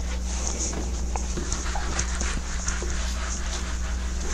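A whiteboard being wiped clean, with faint rubbing strokes and small squeaks over a steady low hum.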